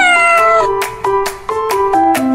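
Short end-card music jingle of quick, bright, evenly paced notes. It opens with a cat-like meow sound effect that slides down in pitch over about half a second.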